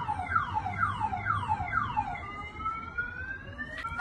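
An electronic siren sounds through a run of quick falling yelps, about three a second. About halfway through it switches to a slow rising wail.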